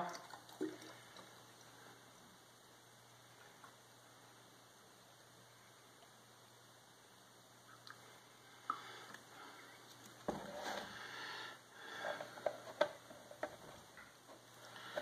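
Apple juice poured from a plastic bottle into a brown glass jug: faint at first, with louder liquid noise in the second half. A few short clicks and knocks of the bottles being handled come near the end.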